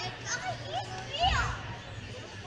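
Children's high-pitched voices calling out and squealing in a busy indoor hall, a few short excited cries over the background chatter, the loudest about a second and a quarter in.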